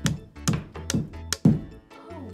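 Rubber mallet tapping a plastic wall anchor into a drywall hole: four strikes, about two a second.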